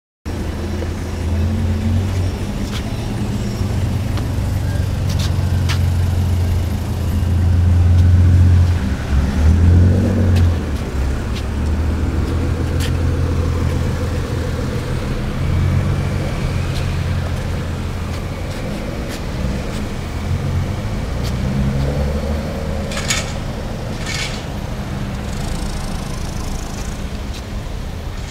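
Lamborghini Murciélago LP650-4 Roadster's V12 engine idling steadily, swelling louder briefly about a third of the way through. Two sharp clicks near the end.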